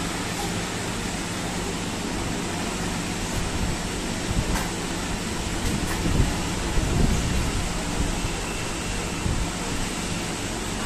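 Steady mechanical hum and hiss of room machinery, with a few light clicks and low thumps around the middle.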